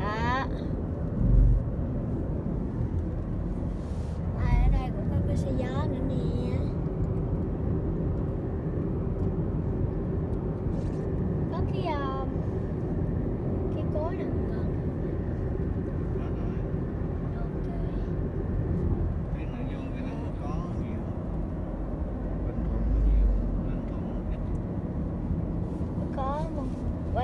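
Steady low road and engine rumble heard from inside the cabin of a car moving at highway speed, with a few louder low thumps.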